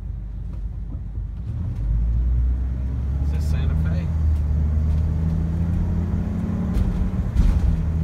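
Car engine and road noise heard from inside the cabin as the car pulls away and drives on; the low rumble grows louder about two seconds in and then holds steady.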